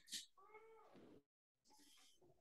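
A faint, brief high-pitched call that rises and falls in pitch, voice-like, just after a short hiss at the start.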